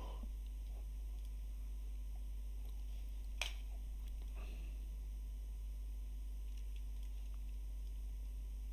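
Low steady electrical hum of a quiet recording room, with a single sharp click of a computer mouse about three and a half seconds in and a fainter tick a second later.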